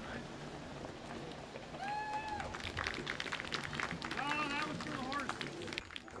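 Hooves and trace chains of a team of draft horses hitched to a log: a run of sharp clicks and knocks through the middle, over a murmuring crowd of onlookers, with a drawn-out call about two seconds in and another shorter one near four seconds.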